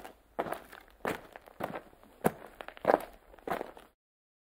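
Footsteps: about seven steady, evenly paced steps, a little under two a second, stopping just before the end.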